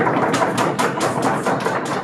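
Rapid, even knocking, about seven sharp strikes a second, over a dense noisy background.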